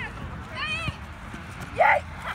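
Voices of soccer players calling out across an open field, with one loud shout just before the end.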